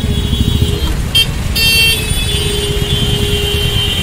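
Motorcycle engine running close by with street noise, a steady low rumble. About a second and a half in comes a short shrill toot.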